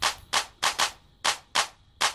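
A run of short, sharp clap-like hits in an uneven rhythm, about three a second.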